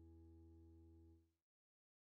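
A held final chord on a digital piano, fading faintly, then cut off abruptly into silence about a second and a half in.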